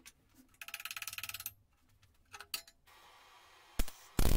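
Steel square tubing handled on a steel workbench: a rapid rattle about a second in and a few clicks, then near the end a faint hiss and one sharp crack as a MIG welding arc strikes briefly.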